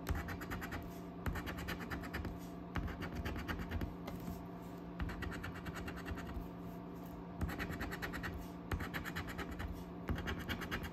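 A coin-shaped scratcher scratching the coating off a paper scratch-off lottery ticket in quick back-and-forth strokes, in runs of about a second broken by short pauses.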